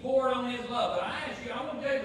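A man speaking, his words not clear enough to make out.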